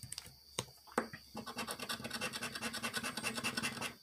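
A scratch-off lottery ticket's coating being scratched away with a round token: a few light taps, then from about a second and a half in, rapid back-and-forth scraping strokes, about ten a second.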